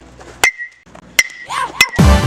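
Metal baseball bat hitting pitched balls in a batting cage: three sharp pings about two-thirds of a second apart, each with a short ring.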